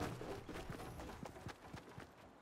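A quick, irregular series of clicks and knocks.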